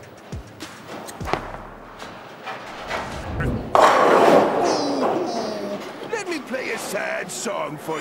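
A bowling ball rolls down the lane and hits the pins about four seconds in: a sudden loud pin clatter that dies away over about a second. Cartoon voices and music follow.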